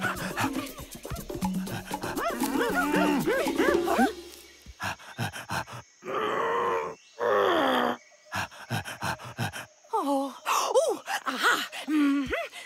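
Cartoon character vocal sounds over light music: wordless pitched chatter, then two loud, rough calls of about a second each about halfway through, from an animated rhino.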